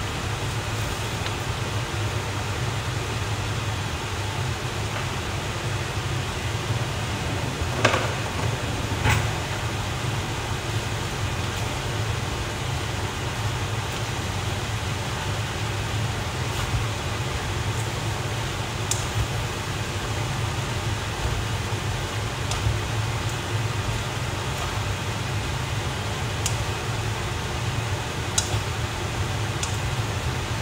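Stir-frying noodles and cabbage in a wok on an induction cooktop: a steady fan-like hum with a hiss over it, and a few sharp clicks of the utensil against the pan, the loudest about eight seconds in.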